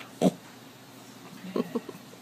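A drowsy micro pig grunting softly while its belly is rubbed: one short grunt just after the start and a few quick, quieter grunts near the end.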